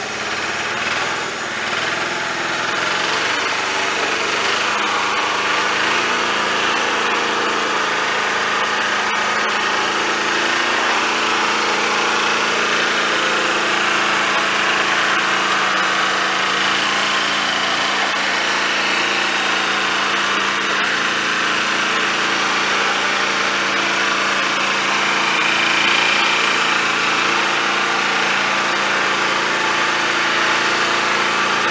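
Farm tractor engine running steadily a few metres ahead while it tows a riding lawn mower by chain.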